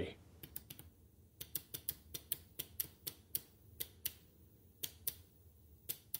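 Small electromechanical relays on a breadboard relay sequencer clicking as they switch, a run of sharp, unevenly spaced clicks about three to four a second, as the sequencer steps through its pulses.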